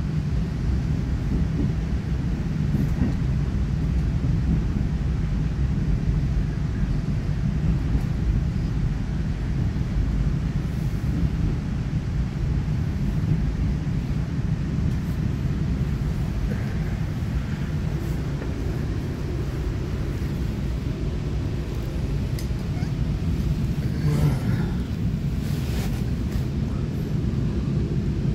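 Steady low rumble of an EMU900 electric multiple unit's wheels and running gear, heard inside the passenger cabin as the train slows into a station. A short burst of higher-pitched rattling noise comes near the end.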